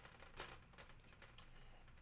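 Near silence, with a couple of faint clicks from the jointed plastic legs of a Joby GorillaPod flexible tripod being wrapped around a light stand.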